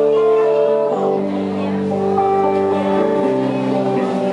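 Live band playing a slow song, led by guitar chords that ring out and change every second or so.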